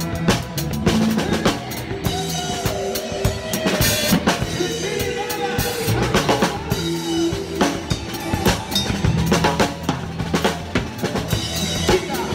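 Acoustic drum kit played with sticks at close range, a steady driving beat of bass drum, snare and cymbal strikes, over a live band's music.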